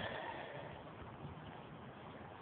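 Faint, steady outdoor background noise with no distinct sound event.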